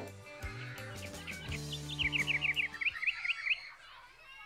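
Logo jingle: a few low held music notes, joined about halfway through by a quick run of about a dozen short, high bird chirps that stop shortly before the end.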